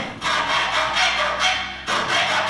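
Hacksaw cutting through light-gauge steel cable tray clamped in a vise, in slow back-and-forth strokes, the thin sheet metal giving off a ringing tone.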